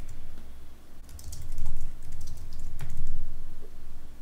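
Typing on a computer keyboard: a quick run of keystrokes from about one to three seconds in.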